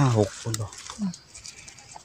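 A man's voice: a drawn-out exclamation falling in pitch at the start, then two short syllables. After that there is only faint scratching and rustling in dry leaf litter.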